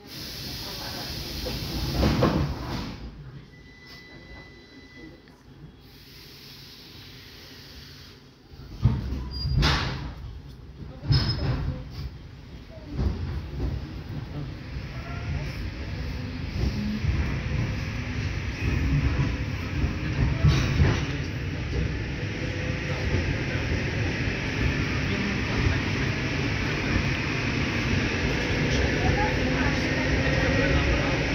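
Inside a passenger train carriage as the train pulls away and gathers speed: a steady low rumble from the running gear, knocks of the wheels over rail joints about ten seconds in, and a faint whine that rises slowly in pitch as the speed builds.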